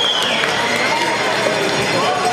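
Ice hockey arena crowd: many spectators shouting and talking over one another, with a high held tone falling away in the first half second.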